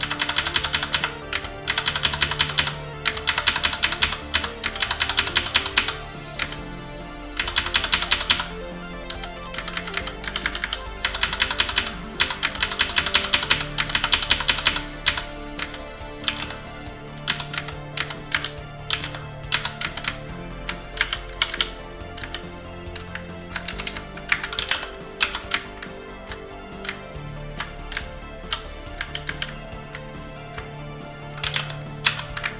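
Computer keyboard typing: fast runs of repeated key presses lasting a second or two, alternating with scattered single keystrokes, as text is deleted and the cursor is moved in a terminal editor.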